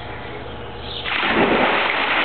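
A woman holding a baby jumps into a swimming pool: a sudden loud splash about a second in, then the hiss of spray and water crashing back onto the surface.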